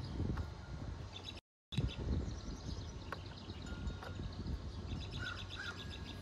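Small birds chirping and trilling in short phrases over a steady low background hum of outdoor noise. The sound cuts out completely for a moment about a second and a half in.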